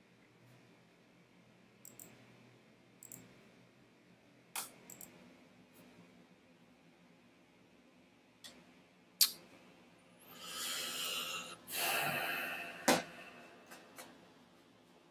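Scattered sharp clicks at a computer desk, then two breathy rushes of about a second each close to the microphone, a person exhaling, followed by one more sharp click.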